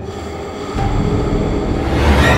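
Horror-trailer soundtrack sound design: a sustained drone of several steady tones, joined a little under a second in by a deep low rumble, building louder.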